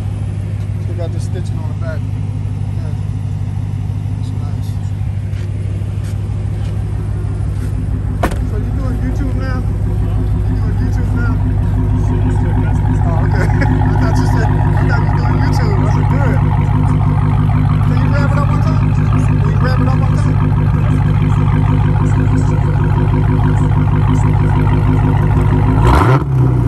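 Dodge Challenger SRT Hellcat's supercharged 6.2-litre HEMI V8 idling steadily, growing louder about halfway through.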